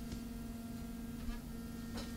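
Faint steady electrical hum in the recording, one low even tone with low background noise under it, in a pause between a man's words.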